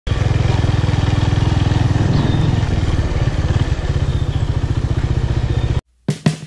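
Honda Tiger Revo's single-cylinder four-stroke engine idling with a steady, rapid low putter. The sound cuts off suddenly near the end.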